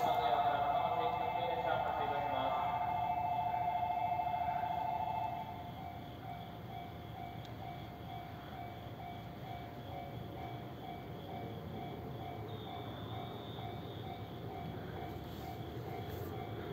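An electronic station departure bell rings with a fast two-tone trill and cuts off about five seconds in. After it, a fainter tone keeps beeping in a steady repeating pattern.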